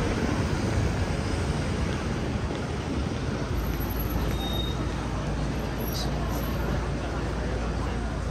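City street traffic: steady road noise from passing cars and a coach, with a low engine rumble coming in about three and a half seconds in.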